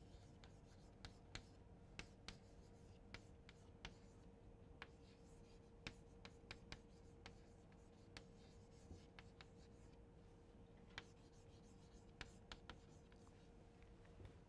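Chalk writing on a chalkboard, faint: a quick, irregular run of sharp taps and short scratches as letters are written, over a faint steady hum.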